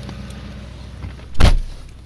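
6.6-litre LBZ Duramax V8 diesel idling steadily, then a single loud thump about one and a half seconds in as the truck's door is shut.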